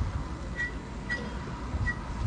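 Faint low wind rumble on the microphone, with four or five faint, short, high chirps about half a second apart.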